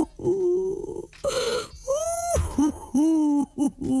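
A person's wordless moans and groans in drawn-out cries, some rising and falling in pitch. A short breathy burst comes about a second in, and quicker short cries come near the end.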